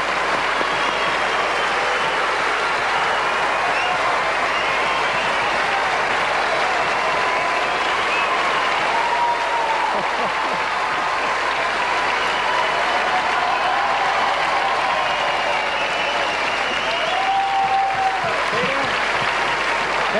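A large theatre audience applauding steadily, with some voices cheering over the clapping.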